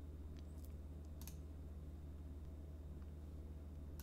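A few faint computer mouse clicks within the first second and a half, the clearest about a second in, over a steady low electrical hum.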